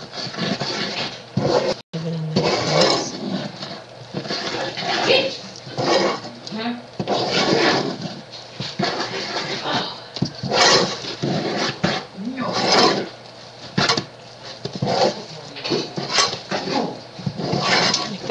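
Wooden spoon stirring a thick, wet flour-and-salt dough mixture in a saucepan, in quick, irregular strokes that slop and scrape against the pot.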